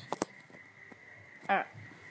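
Two sharp clicks in quick succession just after the start, then a man says a word.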